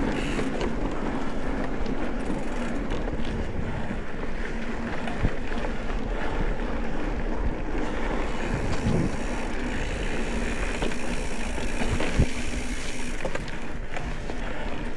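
Wind buffeting the microphone over the rolling rumble of mountain bike tyres on boardwalk planks, gravel and dirt trail, with a few sharp knocks and rattles from the bike.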